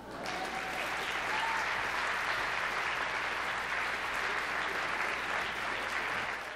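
Audience applause, swelling over the first second and then holding steady.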